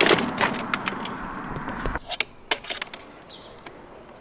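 Light metallic clicks and clinks from handling a sewer inspection camera reel and its camera head, over steady outdoor noise. The noise cuts off abruptly about halfway, leaving a few sharp clicks.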